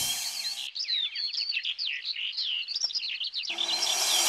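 Birds chirping in a quick flurry of short, high calls. Background music drops out about half a second in and comes back shortly before the end.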